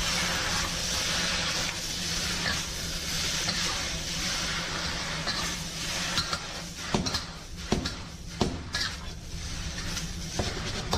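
Noodles and beef sizzling in a hot wok as they are stir-fried and tossed, a steady frying hiss. In the second half several sharp knocks of the utensil striking the wok stand out above it.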